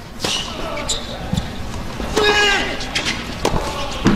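A tennis ball struck with rackets during a point, starting from the serve: a few sharp pops about a second apart.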